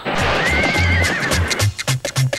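A horse whinnies once, a wavering high call about half a second in, over background music with a steady bass beat.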